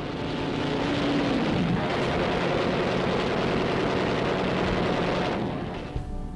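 Aircraft engine noise from a passing plane: a loud, steady rush with a low engine note that drops in pitch about a second in, fading out near the end.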